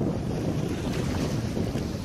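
Wind buffeting the microphone with a steady low rumble over small surf, as a shallow wave washes up the beach with a hiss of foam in the second half.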